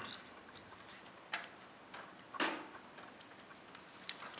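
Small sharp clicks, three in all, the loudest about two and a half seconds in, as a plastic Molex power connector is pushed and wiggled against its mate. It won't seat because one of its pins is slightly bent.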